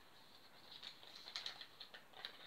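Faint, scattered light clicks and crackles of small wrapped packets being handled at a table, coming mostly in the second half.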